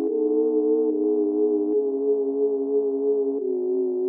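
Electronic intro music: a chord of pure, sustained synthesizer tones held without a break, moving to a new chord three times, about every second or so.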